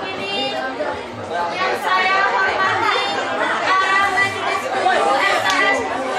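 Speech: a schoolgirl giving a short speech in Indonesian, her voice running on without pause.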